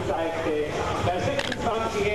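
Voices over steady crowd noise at the ski jump's landing area.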